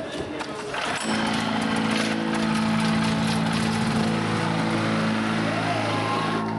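An amplified low droning note with several overtones starts abruptly about a second in and holds steady, over crowd chatter.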